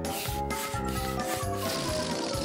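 Hand balloon pump being worked, a rasping hiss in strokes about twice a second, over light children's background music.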